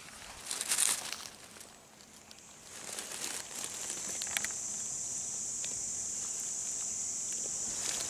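Rustling and crunching of dry leaf litter underfoot and under hand, loudest about a second in, with a few small clicks. From about three seconds a steady high-pitched hiss sets in and holds.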